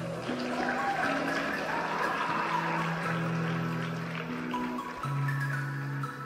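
Instrumental background music with held, overlapping notes; the chord changes about five seconds in.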